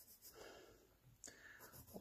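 Very faint scratching of an HB graphite pencil drawn lightly over sketchbook paper, barely above near silence.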